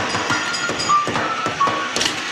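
Upright vacuum cleaner running, with a short tune of held high notes changing pitch every few tenths of a second over it, and a few knocks.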